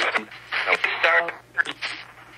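Spirit box app on an iPhone playing short, broken snatches of recorded voice and phonemes through the phone's small speaker, with a radio-like sound and a faint steady hum underneath.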